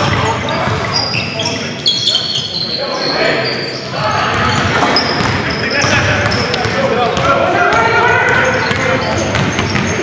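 Indoor pickup-style basketball game on a hardwood gym floor: the ball bouncing as it is dribbled, sneakers squeaking in short high chirps, and players' voices calling out over the play.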